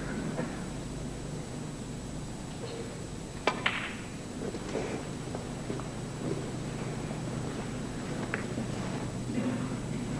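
Snooker balls clicking on the table as shots are played: one sharp click about three and a half seconds in, and a fainter one near the end, over a steady low hum.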